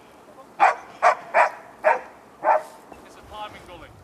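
Search and rescue dog barking five times in quick, uneven succession over about two seconds: short, sharp barks.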